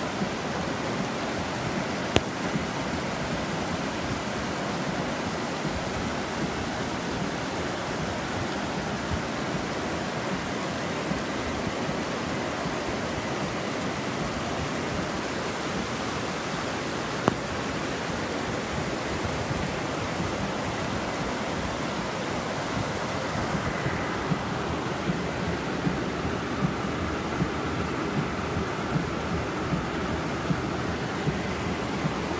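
Steady rush of muddy floodwater running down a street, with rain, heard from inside a car. Scattered light taps come in the last few seconds.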